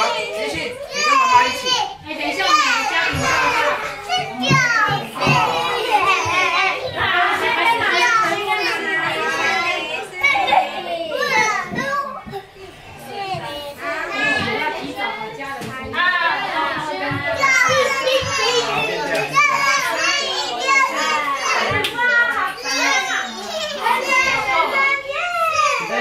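Several young children talking and calling out as they play, their high-pitched voices overlapping almost without pause, with a short lull about twelve seconds in.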